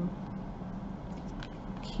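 Quiet steady room noise with a few faint clicks and rustles from lace trim being handled and pressed onto a lampshade with a hot glue gun.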